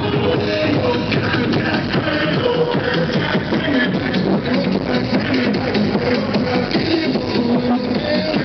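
Loud electronic dance music played by a DJ over a large sound system, distorted by an overloaded camera microphone.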